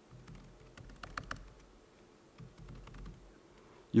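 Computer keyboard typing: an irregular scatter of key clicks while code is edited in a text editor.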